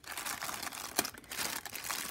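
Clear plastic packaging crinkling as a pencil case sealed in it is picked up and handled, with one sharper crackle about a second in.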